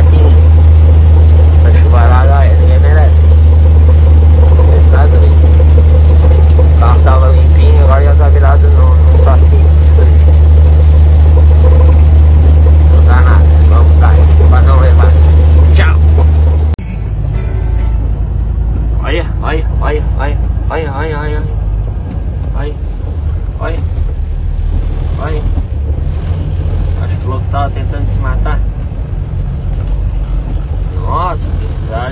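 Heavy truck's engine droning steadily and loudly inside the cab, with a voice or singing over it. About 17 seconds in the sound cuts abruptly to a quieter road scene with voices.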